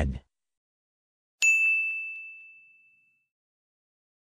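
A single bright ding, an electronic chime sound effect, struck about a second and a half in and fading away over about a second and a half.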